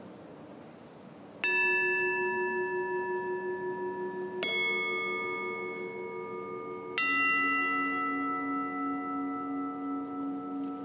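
Bell struck three times, each stroke a different note that rings on until the next, during the elevation of the chalice at the consecration of the Mass.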